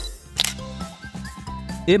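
A camera-shutter click sound effect about half a second in, over background music; a narrator's voice begins at the very end.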